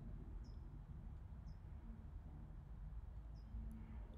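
Quiet background with three faint, short chirps from a small bird.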